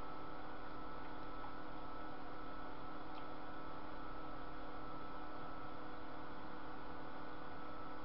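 Steady room tone: an even hiss with a low electrical hum and a few faint steady tones, and one faint click about three seconds in.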